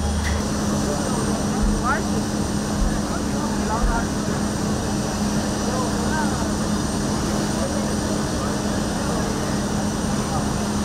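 Fire apparatus engines running steadily at the fireground, a constant hum over a wash of noise, with faint, indistinct voices in the background.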